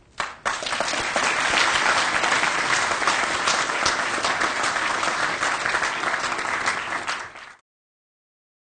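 Audience applauding steadily. The clapping starts about half a second in and cuts off suddenly near the end.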